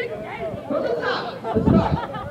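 Several people talking at once, with a low rumbling bump near the end.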